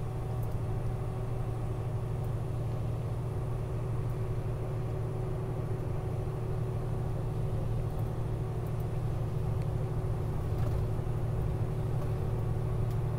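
Steady low drone of engine and road noise heard inside a vehicle's cab while cruising at highway speed.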